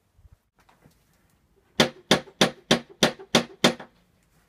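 A few faint footsteps, then seven quick, evenly spaced knocks on a front door, about three a second, starting a little before halfway.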